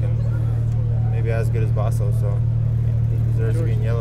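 Steady low hum of an idling engine, under voices of people talking.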